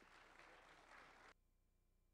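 Faint audience applause that cuts off suddenly about a second and a half in.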